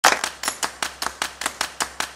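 Rapid, evenly spaced clicks, about five a second, each sharp and fading quickly.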